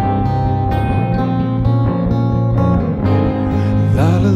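Acoustic guitar strummed together with a second guitar in an instrumental passage of a live band performance, over steady held bass notes, with no singing.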